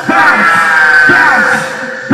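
Live rap performance over a PA: a rapper yells one long held note into the microphone over a heavy backing beat, with a deep kick-drum hit about once a second.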